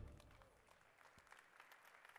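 Near silence: the last of the music fades out at the start, then faint, scattered clapping from the audience.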